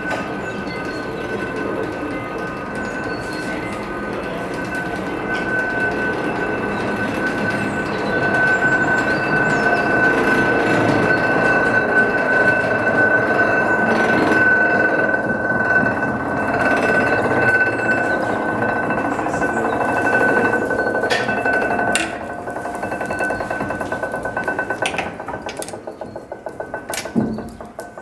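Fribourg's water-ballast funicular car running over its track and haul cable, with a steady high whine from the rolling gear and cable pulleys. It grows louder as the car comes up and passes overhead, drops suddenly about 22 seconds in, then turns into a rhythmic metallic clicking from the running gear.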